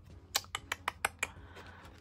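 A hand handling a paper challenge card on a wooden desk: a quick run of about seven light clicks and taps in the first second and a half, then softer handling noise.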